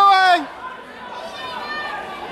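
A person's loud, drawn-out shout that breaks off about half a second in, followed by the steady chatter of a crowd of voices.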